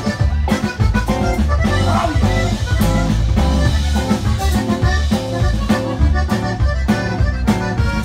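Live Tejano band playing, with a button accordion carrying the melody over a sousaphone and bass guitar line and a drum kit keeping an even, bouncing beat.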